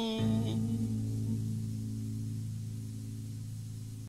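Closing bars of a '90s home-recorded song demo: the singer's held last note breaks off a fraction of a second in, leaving a low final chord ringing and slowly fading away.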